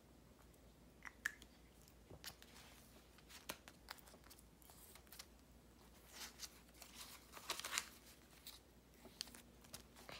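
Faint paper-and-plastic handling: soft rustling and scattered light clicks as a dollar bill is slipped into a clear plastic zippered envelope in a cash binder, busiest in the second half.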